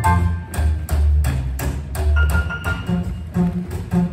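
Live boogie-woogie trio playing an instrumental passage: piano, upright bass and drums, with a steady beat of about three strokes a second.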